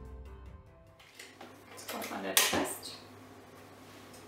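Background music that stops about a second in, then kitchen handling noises at a KitchenAid stand mixer with a glass bowl as the dough is checked, with one sharp knock about halfway through.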